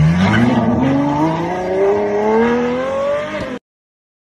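Supercar engine accelerating hard as the car pulls away, its pitch climbing steadily for about three and a half seconds before the sound cuts off suddenly.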